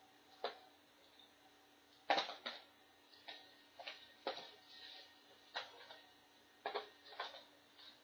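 Small hand tools clicking and clacking as they are picked through in a plastic tray and a pair of pliers is taken up: about a dozen irregular light knocks, the loudest about two seconds in.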